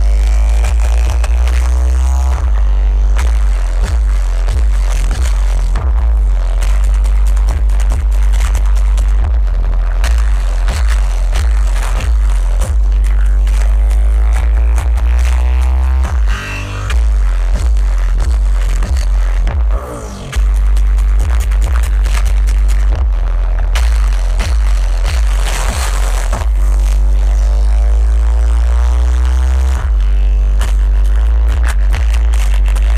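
Bass-heavy music played very loud through a minivan's six 15-inch Rockford Fosgate subwoofers on about 3600 watts, heard from inside the vehicle, with deep bass overwhelming everything else. The bass drops out briefly twice, a little over halfway through.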